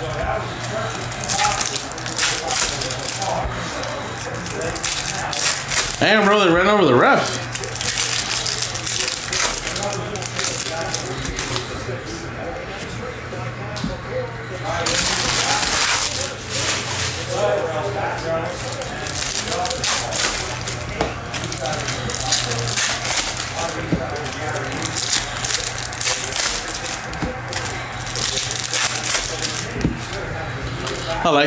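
Chromium baseball cards being flicked through, shuffled and set down on stacks, making a run of quick clicks and slaps mixed with the crinkle of foil pack wrappers. A longer, louder rustle comes about halfway through.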